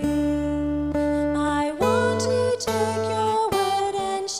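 Slow live worship-band music: acoustic guitar over sustained low bass notes, with long held melody notes above, moving to a new chord about two seconds in.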